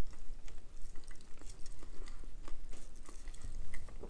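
A man chewing a mouthful of sub sandwich close to the microphone, with irregular soft, wet mouth clicks and smacks. There is no crunch, because the bite missed the sandwich's fried onion strings.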